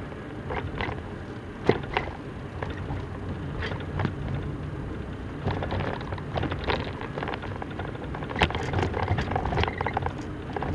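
Steady road and engine rumble of a moving car heard from inside the cabin, with several short sharp knocks and clicks scattered through it; the loudest knock comes just under two seconds in.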